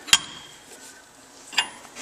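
A wrench tightening the tool-bit holder's clamp nut on an Ammco brake lathe: one sharp click just after the start, then a lighter click about a second and a half in.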